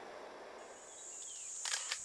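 Faint, steady, high-pitched insect buzzing that fades in about half a second in, over low background hiss.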